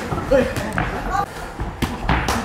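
Boxing gloves landing punches during sparring: three sharp thuds of glove on glove or headgear, about a second apart, with voices in the background.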